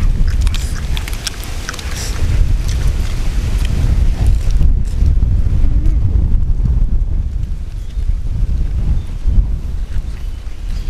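Wind buffeting the microphone: a loud, gusty low rumble that rises and falls throughout, with a few sharp clicks in the first couple of seconds.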